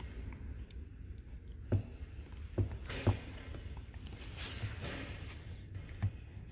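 Hand-pumped hydraulic hose crimper being worked to squeeze a crimp collar onto an air brake hose fitting: a few soft clicks and knocks from the pump strokes at uneven spacing, over a low steady hum.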